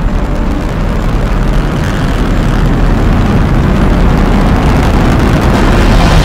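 Sci-fi starship engine sound effect for Slave I, a dense wash of noise over a deep rumble that grows gradually louder as the ship lifts off.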